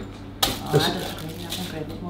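A single sharp knock about half a second in, then a man's speech.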